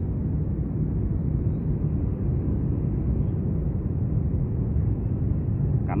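Steady low rumbling background noise with no distinct events, unchanged throughout.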